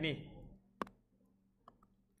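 A stylus tapping on a touchscreen while handwriting a minus sign: one sharp click a little under a second in, then two faint clicks near the end.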